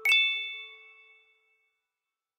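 A single bell-like chime, struck once with a sharp attack, ringing out and fading to silence within about a second and a half.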